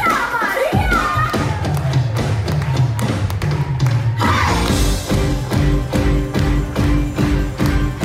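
Live pop-rock music from a stage band. A held bass note sits under sliding high lines in the first half, and about four seconds in a steady drum beat starts under a sustained chord.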